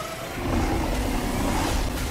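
Movie-trailer sound effects: a rushing swell of noise over a deep rumble that builds after about half a second and eases off near the end.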